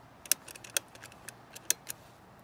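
Push-button keypad of a mechanical combination lockbox being pressed, a quick, uneven series of sharp clicks as the code is punched in to lock it.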